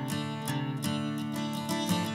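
Acoustic guitar strumming chords in a steady rhythm: the instrumental intro of a rock song, with no singing yet.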